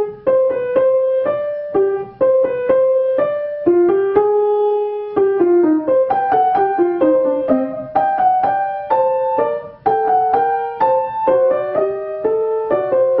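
Grand piano played solo: a melody over a lower part, in phrases of clearly struck notes, with brief breaks about two seconds in and near ten seconds.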